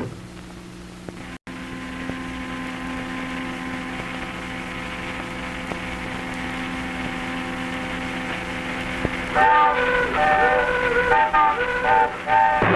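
A car running along a road, a steady noise with a low hum, then from about 9 seconds in several short car-horn blasts in quick succession, some overlapping at different pitches.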